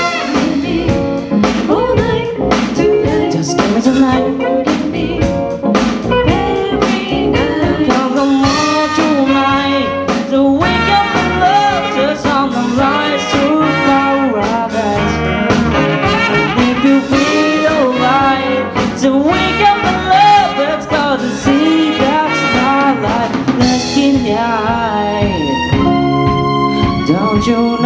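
Live band playing an upbeat song: a horn section of trumpet, saxophones and trombone over drum kit, electric bass and keyboard.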